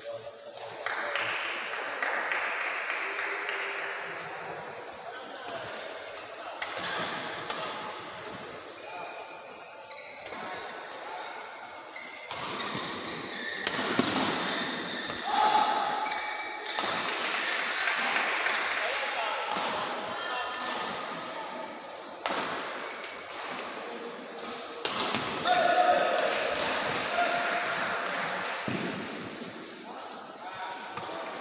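Badminton play in a large hall: racket strikes on a shuttlecock as a string of sharp, irregular hits, with players' feet on the court and voices echoing. The hits come thickest about halfway through and again near the end.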